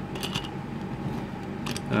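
A few light clicks over a steady background hum.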